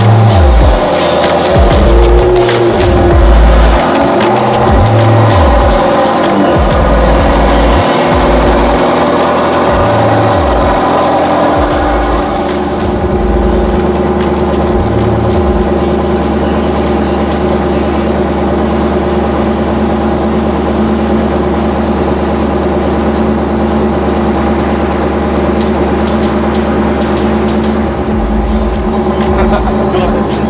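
Music with a heavy bass beat for the first dozen seconds, then a Ferrari F430's V8 engine idling steadily.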